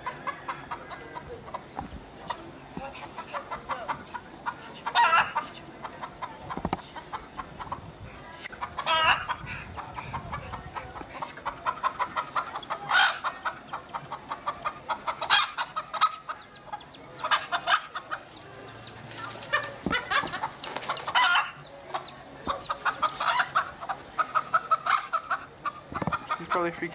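Domestic chicken clucking rapidly, with loud alarmed squawks every few seconds: the sound of a chicken being chased.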